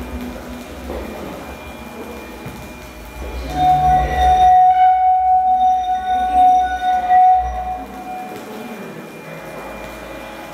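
Electronic ambient sound: a low rumbling drone, then a loud, steady high tone with fainter higher tones above it, held for about four seconds from about three and a half seconds in, before fading back to a quieter drone.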